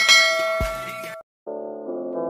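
A bright bell ding, the notification-bell chime of a subscribe-button animation, rings and dies away over about a second, with a low thump just after it starts. After a brief gap, a sustained synth chord begins near the end.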